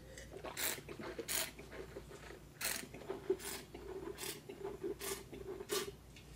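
Wine being sipped and aerated in the mouth: about seven sharp slurps, each less than a second apart, over a low gurgle of wine swished between them.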